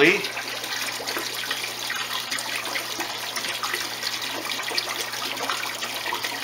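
Water splashing and dripping as a koi is lifted from a bucket of water and moved to a tub, with small irregular splashes throughout.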